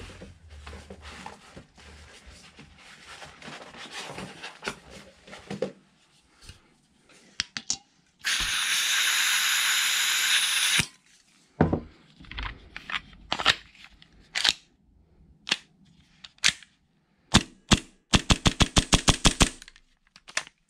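Airsoft gas can hissing for about two and a half seconds as it charges a Hi-Capa pistol magazine, amid clicks of handling. Near the end a Tokyo Marui Hi-Capa gas blowback pistol fires a fast string of about a dozen sharp cracks, a test that the newly fitted nozzle cycles.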